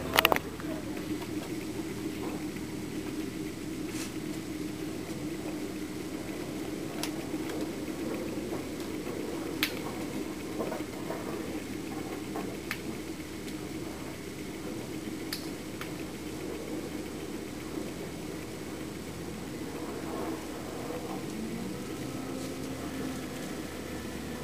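Machinery running steadily in the background with a low, even drone, and a few faint sharp clicks or knocks now and then.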